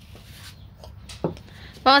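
A lull in women's conversation: steady low background rumble with a few faint clicks, a short vocal sound a little past halfway, and a woman starting to speak near the end.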